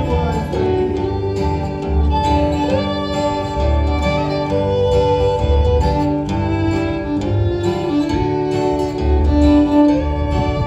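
A string band playing an instrumental passage with no singing: bowed fiddle to the fore, over strummed acoustic guitar and plucked upright bass notes.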